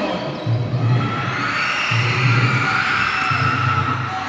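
Basketball bouncing on the gym floor during play, under background music with a recurring low beat.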